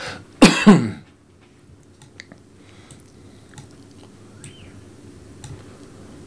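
A man's short, harsh cough about half a second in, the loudest sound here, followed by a few faint clicks.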